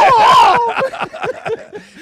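A man's loud, drawn-out "oh!" cry, acting out a groan heard through a thin bathroom wall, breaking into laughter from several men.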